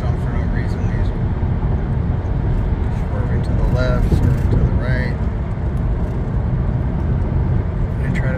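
Road and engine noise inside a moving car's cabin at highway speed: a steady low rumble, with a few brief voice sounds over it.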